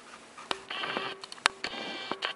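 Camera autofocus motor whirring in two short spells as the lens hunts for focus, with a few sharp handling clicks; the loudest click comes about one and a half seconds in.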